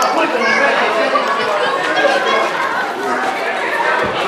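Many wedding guests talking at once, overlapping chatter in a large banquet hall.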